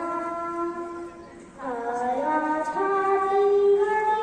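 A young girl singing into a microphone, holding long drawn-out notes, with a short break for breath about a second and a half in before the song resumes.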